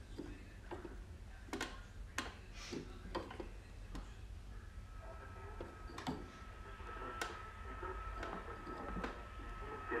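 1926 Freshman Masterpiece battery radio being tuned between stations: faint, scattered clicks and crackles, and a thin steady whistle that comes in about halfway and grows stronger toward the end.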